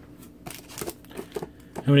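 Faint handling of trading cards and card packs on a table: a few soft taps and light rustling as the cards are put down and a pack is picked up.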